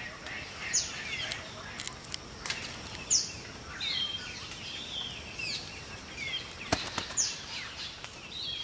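Birds calling in rainforest: three sharp, high whistles that fall in pitch, spread through the clip, among scattered chirps. A few sharp taps or knocks are heard, the loudest about three-quarters of the way through.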